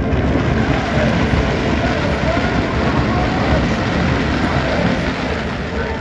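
Daytime crackling fireworks going off in a dense, continuous rapid crackle.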